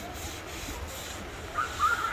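Outdoor ambience with a steady low rumble and faint distant voices, and a higher wavering voice-like call near the end.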